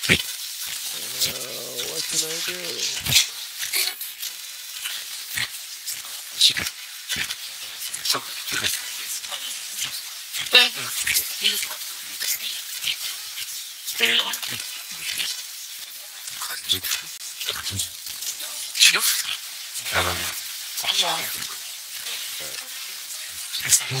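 MiniBox Plus FM ghost box sweeping through radio stations: steady crackling static hiss full of rapid clicks, with brief chopped-up fragments of broadcast voices cutting in and out.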